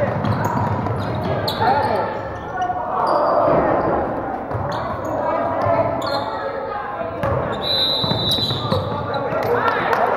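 Basketball game sounds in a large gym: a ball bouncing on the hardwood court and sneakers moving, under steady indistinct voices of players and spectators echoing in the hall. A brief high-pitched tone sounds about eight seconds in.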